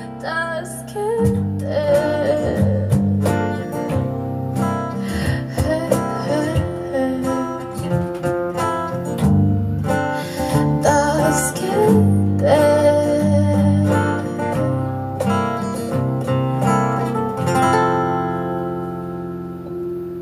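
Small live acoustic band playing a song: acoustic guitar, electric bass and cajón, with a woman singing in parts. Near the end the percussion stops and a last chord rings out and fades.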